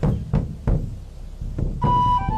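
Background music: a few deep drum beats in uneven rhythm, with a high held note coming in near the end.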